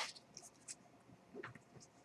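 Faint, scattered clicks from computer keys, with one sharper click right at the start.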